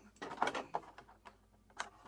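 A few light, sharp clicks and taps, spaced irregularly, typical of a small toy car or its parts being handled on a hard surface.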